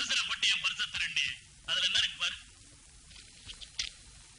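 A person's voice speaking film dialogue in two short phrases, thin and tinny with little low end. A few faint clicks follow near the end.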